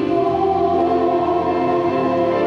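Church choir singing a hymn in slow, long-held notes.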